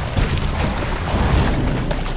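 Saltwater crocodiles thrashing in river water as they fight: continuous heavy splashing over a deep rumble.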